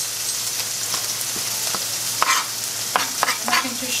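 Chicken pieces frying in a pan, a steady sizzling hiss. Over it come a few sharp knocks of a knife chopping parsley on a plastic cutting board, the loudest about two seconds in.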